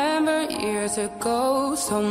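Acoustic pop cover song: a solo voice sings long, held notes that slide between pitches, with vibrato.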